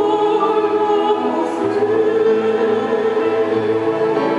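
Choral music: voices singing long held notes in a classical or sacred style.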